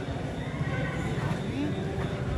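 A person's voice, wavering up and down in pitch.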